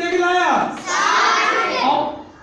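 A man's voice, then, about a second in, a group of children answering together in chorus.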